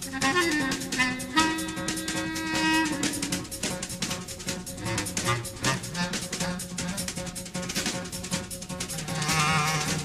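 Small jazz ensemble playing: busy drums and percussion with double bass, under a few held melody notes in the first three seconds and a wavering held note near the end.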